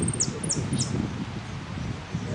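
Caged saffron finch (Argentine jilguero) singing: a quick run of high, sharply falling notes that stops about a second in, over a low rustling background.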